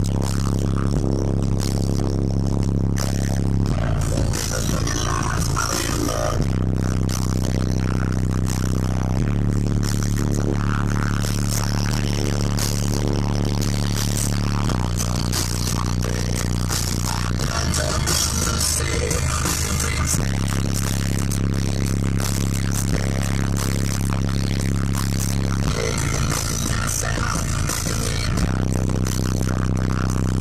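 Car audio bass demo: music played through twelve 12-inch JBL subwoofers in a fourth-order bandpass enclosure, loud, with deep held bass notes that change pitch every few seconds.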